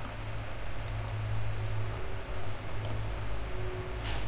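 Low steady hum with faint background hiss: the quiet room tone of a computer-recorded call, with a faint click a little over two seconds in.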